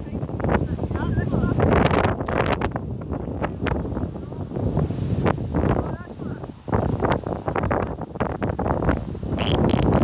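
Wind blowing hard across a phone microphone, gusting unevenly, with faint children's voices in the background.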